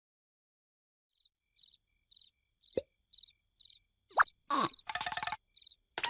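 Cartoon sound effects: crickets chirping about twice a second, with a single water-drop plop about halfway. Near the end come a rising bloop and a rasping buzz about a second long.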